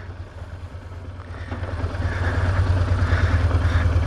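BMW R1200GS boxer-twin engine running at low speed as the motorcycle rolls along a gravel road, a steady low throb that grows louder over the second half.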